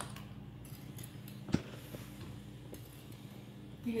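Serrated bread knife scraping across a block of clear ice to score a cutting line, quiet, with one sharp click about a second and a half in.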